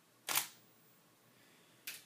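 Canon DSLR shutter released by remote, firing once about a third of a second in, with a short, fainter click just before the end.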